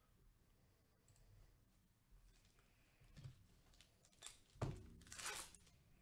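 Handling of trading cards and packs in a quiet room: a soft knock, then a sharper thump about four and a half seconds in, followed by a brief crinkly tear as a card pack wrapper is ripped open near the end.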